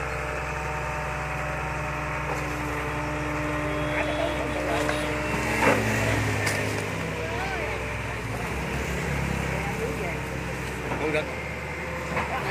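Diesel engine of a barge-mounted long-reach excavator running steadily under hydraulic load as it works its bucket. About six seconds in, a heavy load of wet mud drops from the bucket onto the bank with a thud, and the engine note changes as the arm swings back.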